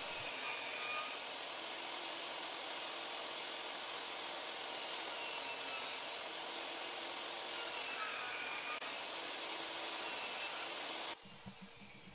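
Table saw running and ripping through a small glued-up walnut box stood on edge, cutting it in two to separate the lid. The blade's pitch sags slightly under load near the eighth second, and the sound stops abruptly about eleven seconds in.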